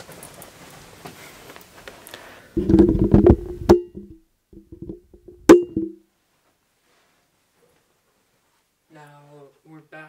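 Handling noise picked up by a Rode Stereo VideoMic Pro on the camera at +20 gain: a faint hiss, then a burst of low knocks and clicks, and about five and a half seconds in one sharp click, the loudest sound, as the mic's switches are worked. The sound then cuts out to dead silence.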